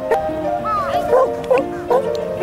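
Background music with a dog giving several short barks and yips over it.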